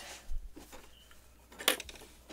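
Two sharp clicks from a home sewing machine's presser foot and fabric handling as the work is pivoted at a seam corner, the machine not stitching. The second click, near the end, is the louder.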